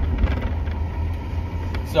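Steady low rumble of engine and road noise inside the cabin of a car being driven.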